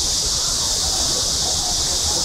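Steady, high-pitched buzzing chorus of cicadas, loud and unbroken, over a low outdoor rumble.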